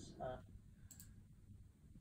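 Two faint, quick, high-pitched clicks about a second in, from a finger tapping an iPad touchscreen. Otherwise near silence after a brief trailing word of speech.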